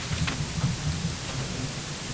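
Room tone of a large meeting room: a steady hiss with a low, uneven hum of faint background murmur, and a couple of light clicks near the start.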